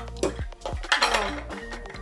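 Glass candle jars and a metal jar lid clinking as they are handled, with a cluster of clinks about a second in, over background music with a steady beat.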